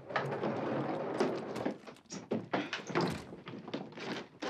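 A silver hard-shell suitcase being pulled out of a wardrobe and hoisted, with a run of knocks, thunks and scraping as it bumps against the furniture.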